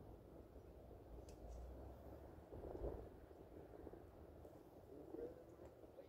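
Near silence: faint outdoor background with a low rumble and a few soft, brief ticks.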